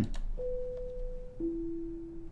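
A faint click, then a two-note falling chime: a higher tone held about a second, then a lower one. It is the PA system's pre-announcement chime, sounding as a message starts playing to the selected zones.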